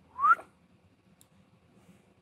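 A single short squeak that sounds like a whistle, rising in pitch and lasting about a quarter second, near the start.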